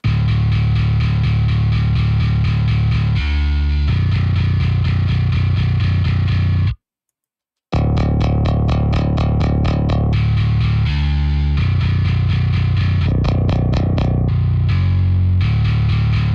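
Playback of a heavy, distorted metal bass part: a virtual bass instrument run through a Parallax bass distortion plugin, playing a fast, tightly picked rhythm with a deep low end. It stops for about a second near the middle, then starts again.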